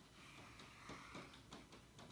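Near silence: room tone, with a few faint soft touches about a second in.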